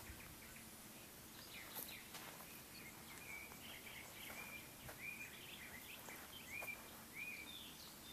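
Faint birdsong: a songbird repeats short whistled notes, about one every half second or so, from about three seconds in, over quiet background noise with a few faint clicks.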